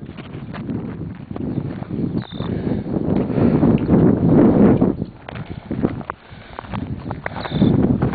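Footsteps on a gravelly dirt edge with the rustle and bumps of a handheld camera being carried. The sound is irregular and rises and falls in level.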